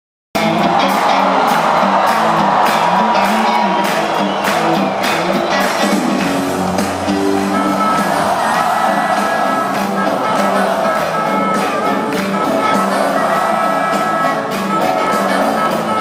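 Live rock band playing loud in a large hall, recorded from within the audience, with the crowd singing and shouting along. The frontman plays harmonica into a cupped microphone over the drums. The music cuts in abruptly just after the start.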